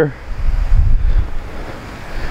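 Wind buffeting the microphone: a low rumble with a noisy hiss, strongest in the first second and fading toward the end.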